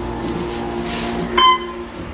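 OTIS Series 1 hydraulic elevator car moving with a steady low hum, then a single short arrival chime about 1.4 s in, as the car reaches the floor; the hum dies away near the end.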